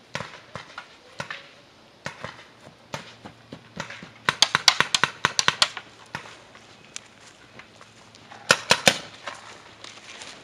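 Paintball markers firing: scattered single pops, a rapid string of about a dozen shots around the middle, and a quick burst of four near the end.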